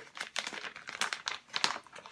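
Clear plastic snack bag of dried shredded squid crinkling in irregular rustles as it is handled and held open.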